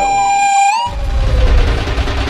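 Comic background music: a held, whistle-like tone that bends up slightly and stops under a second in, then a low bass-heavy music bed.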